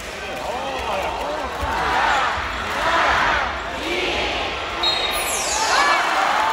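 Basketball shoes squeaking on a hardwood court during live play: many short, sharp squeaks in quick succession over the murmur of an arena crowd.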